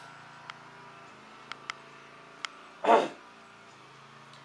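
A dog barks once, short and loud, about three seconds in. A few faint clicks come before it over a steady low hum.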